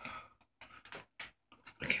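A breathy noise close to the microphone, then a run of short, soft clicks, like a phone being handled; a man starts to speak near the end.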